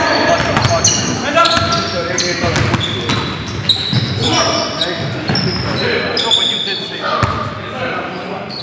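Basketball game sounds in a large echoing gym: a ball bouncing on the hardwood court, short high sneaker squeaks, and players' indistinct voices calling out.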